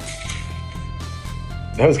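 Plastic soda bottle cap twisted open, letting out a short, weak hiss of carbonation ("kind of a lazy sound") right at the start, over background music.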